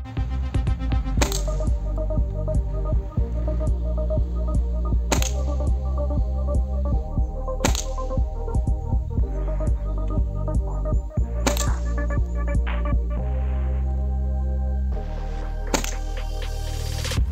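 Five shots from a CBC Expresso 345 break-barrel air rifle fitted with a 40 kg gas-ram kit, one every three to four seconds. They sound over electronic background music with a steady bass beat.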